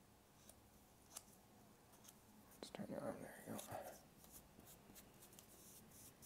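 Near silence, with faint small clicks and rustles from kinesiology tape being laid down and pressed onto the skin of a forearm. A brief faint murmur of a voice comes about three seconds in.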